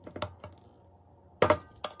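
A metal-tipped tool prying at the rim of a Bonilla a la Vista potato-chip tin's press-fit lid: a few sharp metal clicks and scrapes. The loudest comes about one and a half seconds in, with another just after.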